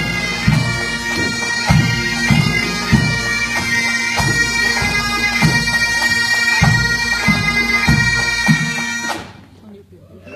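A pipe band playing: Highland bagpipes sounding a steady drone under the chanter melody, with regular drum beats. The band stops together about nine seconds in as the tune ends.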